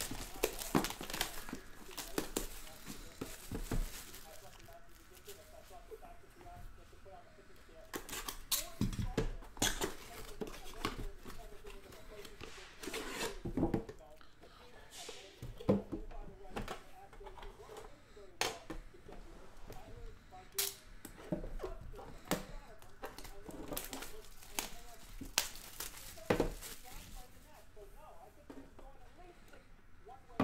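Plastic shrink-wrap being torn and crinkled off a trading-card box, with scattered sharp clicks and taps as the box and its lid are handled and lifted off.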